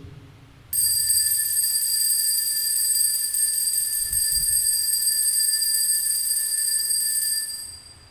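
Altar bell ringing continuously in several high, steady tones. It starts suddenly about a second in and dies away near the end. This is the signal for the elevation of the host at the consecration of the Mass.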